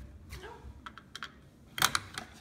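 Plastic Lego bricks and parts clicking as a hand works a hatch on the model: a few light clicks about a second in, then a sharper quick cluster of clicks near the end.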